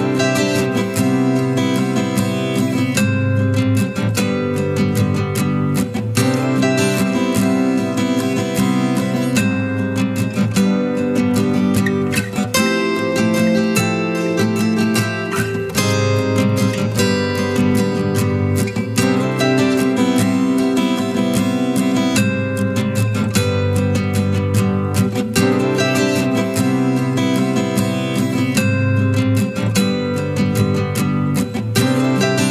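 Background music: a strummed acoustic guitar track with a steady beat.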